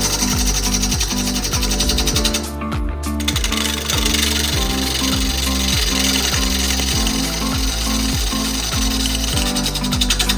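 A bowl gouge cutting a spinning bowl blank on a wood lathe, a rapid, even chatter of the tool striking the out-of-round wood on each turn, with a brief break about two and a half seconds in. Background music with a steady beat plays throughout.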